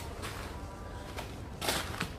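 Quiet, steady low background hum with a single short scuff near the end.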